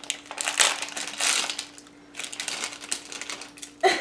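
Clear plastic candy wrapper crinkling and crackling as it is pulled open by hand, with a short lull about two seconds in.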